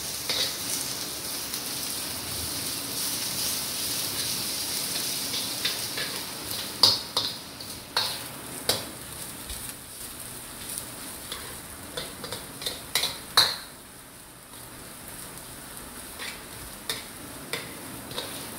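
Shredded food sizzling in a hot stainless steel wok as it is stir-fried, with the spatula scraping and now and then knocking sharply against the metal, the loudest knock about two-thirds through. The sizzle quietens over the last few seconds.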